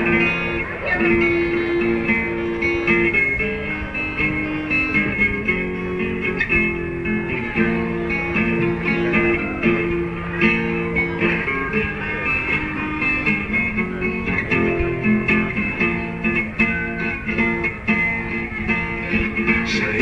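Instrumental introduction of a Greek rock song: guitar playing a chord progression over bass, the chords changing every second or two.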